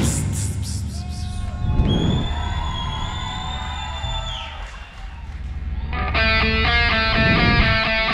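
Live rock band on amplified instruments: a loud hit with cymbals right at the start rings out, then a high held guitar tone sustains for a couple of seconds and bends downward as it stops. After a short lull, about six seconds in, a fast, rhythmic riff of pitched notes starts up.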